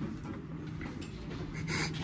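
Quiet room noise with a low, steady hum underneath.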